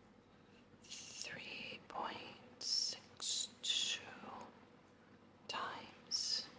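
Whispered speech in short, soft phrases, as a number is read out while it is written.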